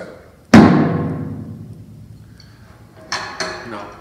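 A single stroke on a tom-tom with a two-ply Remo Pinstripe head, giving a pitched, round tone that fades over about two seconds. It shows the tuning just described: the head in tune with itself and the bottom head tighter, so the drum has body without ringing on forever.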